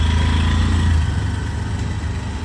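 Auto-rickshaw (tuk-tuk) engine running as it passes close by and pulls away, its low hum dropping off after about a second.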